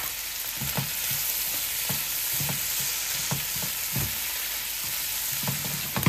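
Cubed venison heart sizzling in melted butter in a nonstick skillet, a steady hiss, while a plastic turner stirs and turns the pieces with soft scrapes and knocks every half second or so. The meat is nearly done.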